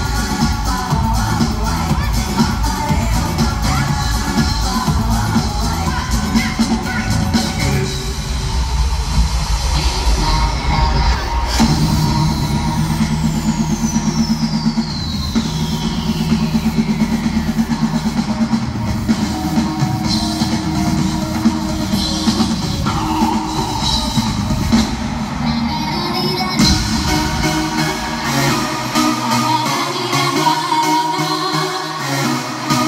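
Live electronic dance-pop music with a driving beat, played loud over an arena sound system. A long descending synth sweep runs through the middle, and the track builds back to full brightness near the end.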